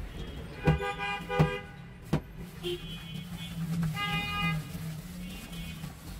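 Street traffic with several short vehicle horn toots, the loudest two near the start, over a steady low hum. A sharp knock comes about two seconds in.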